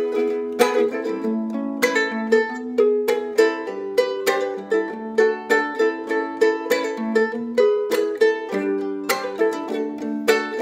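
Solo ukulele strummed in a steady rhythm, several strums a second, the chords changing every second or so, with no singing.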